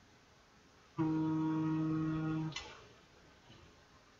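A man humming one steady low note for about a second and a half, trailing off with a short breathy noise.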